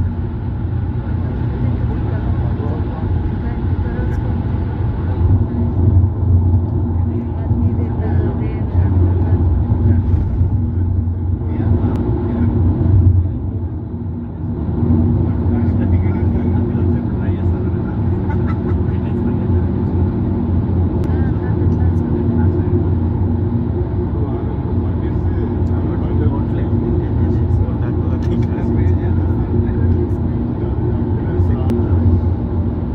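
Car cabin road noise at highway speed: a steady low rumble of tyres and engine with a steady hum above it, dipping briefly about 14 seconds in.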